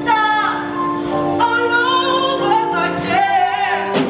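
A woman singing a solo song on stage, holding long notes with a wavering vibrato over instrumental accompaniment.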